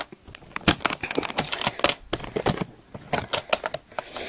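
Metal latches and lock hardware of a Caboodles train case clicking and rattling as they are handled and opened: a quick, irregular run of sharp clicks.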